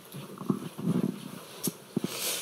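A few soft clicks and knocks, typical of a microphone being handed over and handled, with a short low murmur or chuckle between them.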